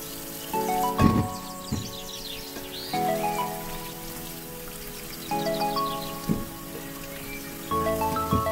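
Tap water running and splashing onto a dried fish in a glass bowl in a stainless steel sink, with a few sharp knocks, the loudest about a second in. Over it plays background music: a mallet-like melody in short phrases.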